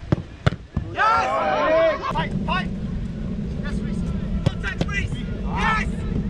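Footballs struck hard in a goalkeeping shooting drill: a few sharp thuds in the first second, followed by shouted calls. From about two seconds in, a steady low rumble runs underneath, with another thud partway through and a shout near the end.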